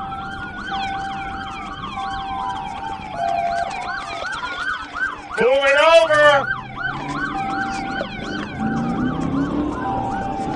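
Police sirens sounding during a vehicle pursuit. A slow wail rises and falls every couple of seconds, overlapping a fast yelp that repeats several times a second.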